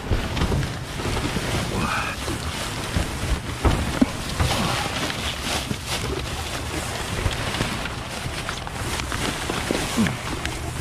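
Plastic wrap and bubble wrap crinkling and cardboard rustling as gloved hands rummage through a gaming-chair box, over a steady low rumble of wind on the microphone. A sharp knock about four seconds in.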